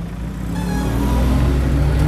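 A motor vehicle's engine accelerating close by, growing steadily louder as its low pitch slowly rises.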